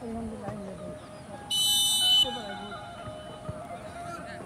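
A referee's whistle blown once, a single shrill blast of under a second about halfway through, signalling the restart of play. Players' voices call out faintly around it.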